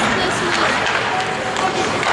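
Hockey skates scraping and carving on the ice, with voices of spectators in the arena over it.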